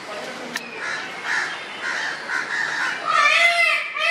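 A bird calling loudly in a quick series of repeated, arching calls that begin about three seconds in.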